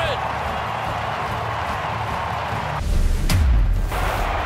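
Stadium crowd cheering as a steady roar. About three seconds in, the roar cuts away under a deep, falling whoosh: an edit transition sound.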